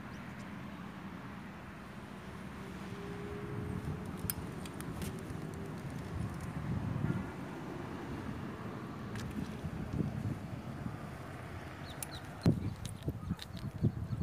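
Faint outdoor ambience with a low rumble throughout and a few light clicks. Some louder knocks come near the end.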